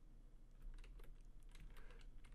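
Faint, irregular clicking of computer keyboard keys, a few light taps a second, over quiet room tone.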